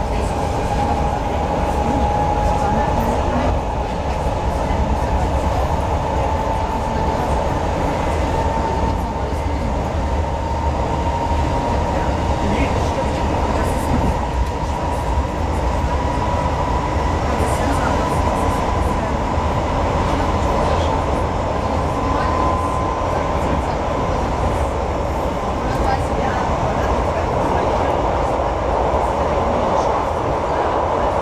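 Hamburg S-Bahn class 472 electric multiple unit heard from inside the car while running along the line: steady running and track noise, with an electric motor whine slowly rising in pitch.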